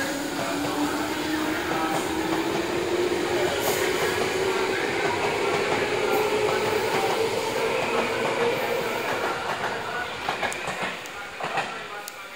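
Electric train running at a station: a whine rising slowly and steadily in pitch over rail rumble. It fades near the end, with a few short clunks.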